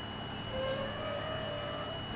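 An R42 subway train running slowly along an elevated station platform, a steady rumble and hum. A faint whine comes in about half a second in, rising a little in pitch.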